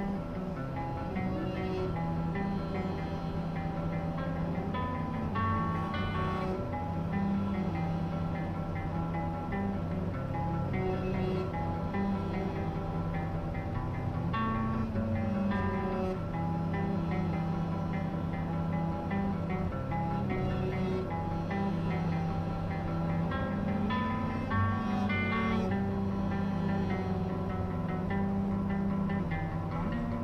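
Guitar music playing, from a song on the car's stereo.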